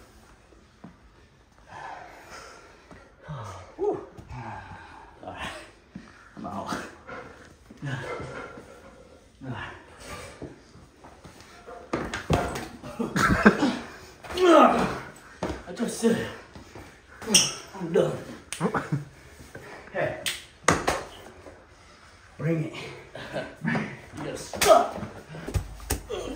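Wordless vocal sounds from people wrestling, grunting and yelling, broken by several sharp smacks, with a louder stretch in the second half.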